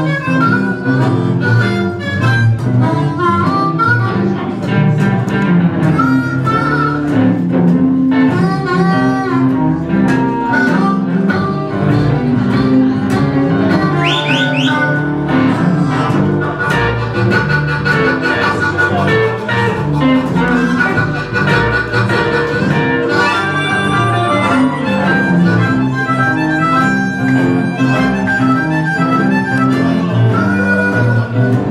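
Live blues band with a harmonica solo, the harmonica played cupped against a vocal microphone, wailing and bending notes over the band's steady backing.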